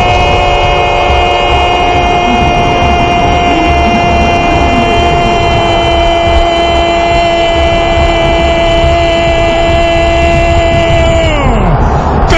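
A radio football commentator's drawn-out goal cry: one unbroken "goool" held on a steady pitch for about twelve seconds, dropping away at the very end.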